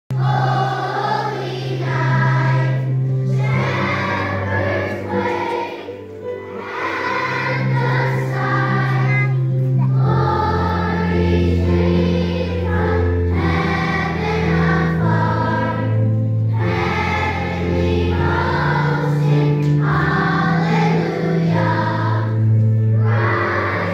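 Children's choir singing in unison over long, held low accompaniment notes, with a short break between phrases about six seconds in.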